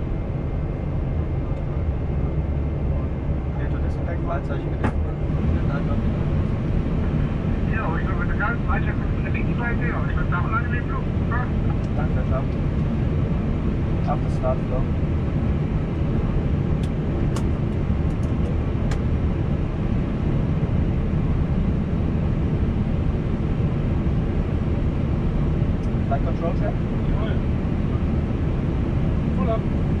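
Steady low drone inside an Airbus A320 cockpit on the ground, its jet engines running at idle after start. Faint voices come through briefly a few times.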